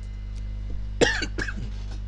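Two short coughs from a man, about a second in and just after, over a steady low hum.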